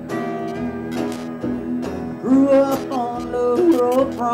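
Live country band music with plucked and strummed guitars, played between sung lines; a run of notes that slide up and down in pitch comes in the second half.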